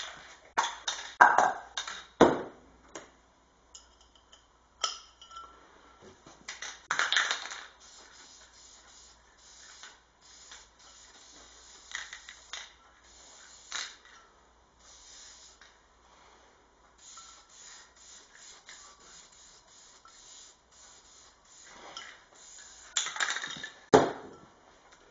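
Aerosol can of etching primer spraying in repeated hissing bursts and longer passes. There are a few sharp clinks and knocks as the can and part are handled, loudest in the first couple of seconds and near the end.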